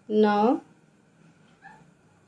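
Mostly speech: a woman says a single counted number, 'nine'. A faint, short squeak follows about a second and a half in.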